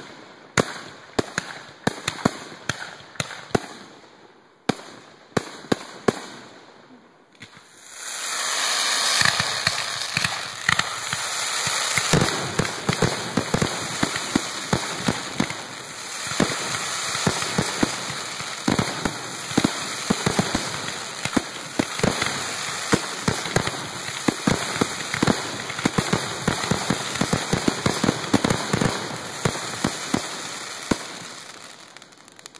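Aerial firework shells bursting: separate sharp bangs for the first several seconds, then from about eight seconds in a dense, continuous barrage of rapid bangs over a steady rush of noise.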